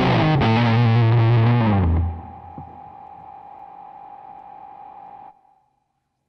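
Electric guitar played through the B6 mini amp's overdrive effect: loud distorted chords for about two seconds, then the sound drops away to a quiet steady hiss with a faint held tone. That cuts off suddenly a little after five seconds.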